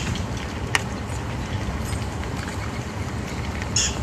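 Steady low rumble of wind or outdoor background noise on the microphone, with a sharp click about three-quarters of a second in and a brief high chirp near the end.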